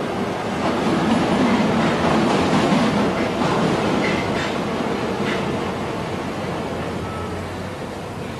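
Train running, heard from inside the carriage: a steady rumble and rattle that swells over the first few seconds and then slowly fades, with brief high wheel squeals about four seconds in.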